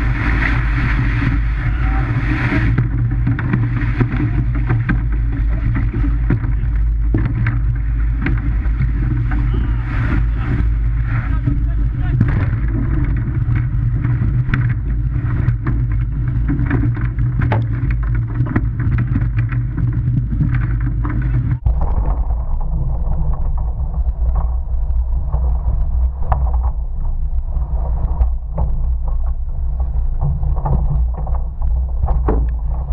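Loud, steady rush of wind and surf on the microphone of a camera mounted in a surf rowing boat at sea. The sound changes abruptly about two-thirds of the way through.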